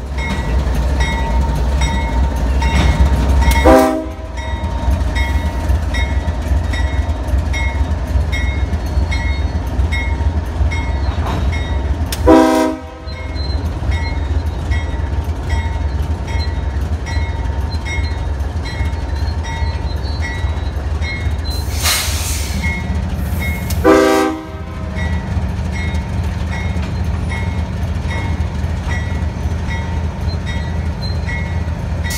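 GE ES44DC diesel locomotive pulling a tie distribution train slowly past, giving a steady low rumble of engine and wheels, with three short horn blasts about 4, 12 and 24 seconds in. A bell rings steadily, and a brief hiss comes about 22 seconds in.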